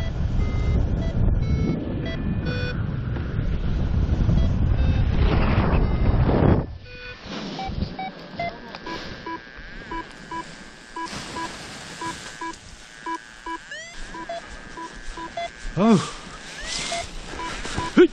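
Loud wind buffeting the microphone of a paraglider in flight, cutting off suddenly about a third of the way through. After that a paragliding variometer keeps beeping, short high and low tones about twice a second.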